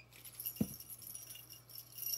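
A chunky gunmetal link chain necklace jingling and clinking softly as it is handled and lifted. There is a single soft thump about half a second in.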